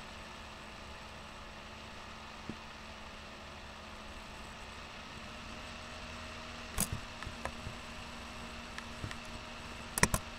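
Steady background hum with a few sharp clicks at a computer: a single one early, a quick cluster about seven seconds in, and a couple more near the end.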